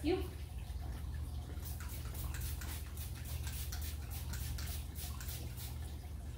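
Trigger spray bottle of Rescue disinfectant spraying, a rapid series of short hissing sprays about four or five a second, over a steady low hum.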